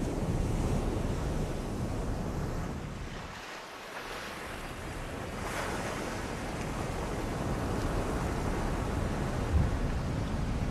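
Ocean surf breaking and washing onto a beach: a steady rush of waves that dips about three and a half seconds in and then swells again. A short low thump comes near the end.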